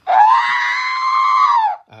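Droid sound effect played through a Padawan 360 board's amplifier and loudspeaker as the audio confirmation of switching to drive speed three: one loud electronic whistle lasting nearly two seconds that rises briefly, holds, and falls away at the end.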